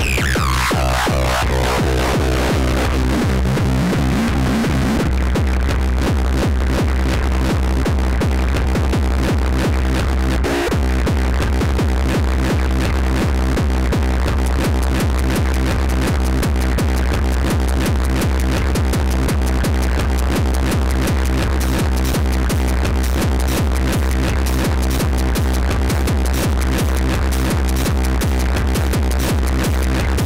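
Live electronic dance music played on hardware synthesizers and drum machines: a steady kick-drum pulse over a deep bass drone. A sweep falls in pitch over the first few seconds, and the beat breaks briefly about ten seconds in.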